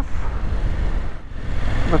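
Riding noise from the Husqvarna Norden 901 on tarmac: wind rushing over the rider's microphone over the low steady rumble of the bike's parallel-twin engine, easing briefly a little past halfway.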